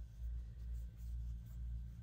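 Faint scratching and rubbing of wool yarn drawn over an aluminium crochet hook while chain stitches are worked by hand. Under it is a low handling rumble that swells and fades about twice a second.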